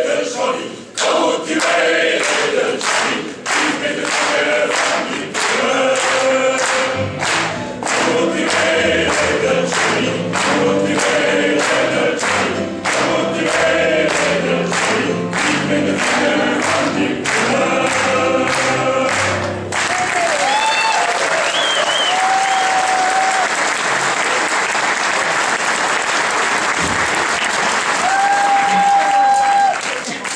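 Male voice ensemble singing a country-style song, with the audience clapping along in time at about two claps a second. About twenty seconds in the singing stops and the audience breaks into applause, with a few voices calling out.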